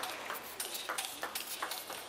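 Table tennis rally: the celluloid ball clicking in quick succession off the rackets and the table, over the steady hum of the hall.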